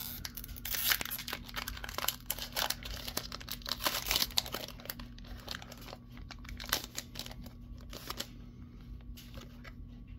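Foil wrapper of a Pokémon trading card booster pack crinkling and being torn open by hand: a run of sharp crackles and rips, busiest in the first half and thinning out later. A faint steady low hum lies underneath.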